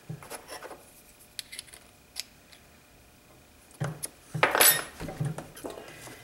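Light metal clicks and clinks of a small wrench on the collet of a flexible-shaft rotary tool handpiece as a carving bit is changed. A few louder knocks and clatters follow about four seconds in, as tools are handled on the bench.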